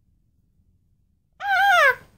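A girl's high-pitched cry of "ah!", about half a second long and dropping in pitch at the end, after near silence.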